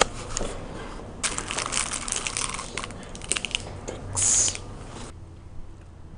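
Close rustling and crinkling right on the microphone, with a louder rubbing hiss about four seconds in; it cuts off suddenly about five seconds in.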